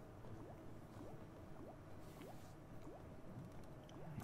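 Faint sound effects from the online slot game's audio: short rising blips, drip-like, about two a second, while the reels spin on autoplay.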